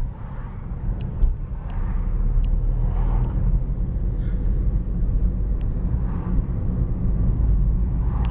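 Car cabin noise while driving slowly: a steady low rumble of engine and tyres heard from inside the car, with a few faint ticks.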